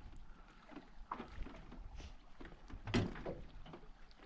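Quiet ambience aboard a small aluminium boat: a low steady rumble with faint knocks and water sounds from the hull. A brief voice sound comes about three seconds in.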